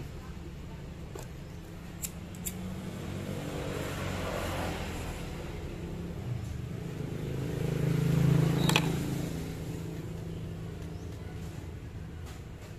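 A motor vehicle's engine runs in the background as a low hum, swelling as it passes about eight seconds in, with a brief whine at its loudest. A few faint clicks come from wires being handled.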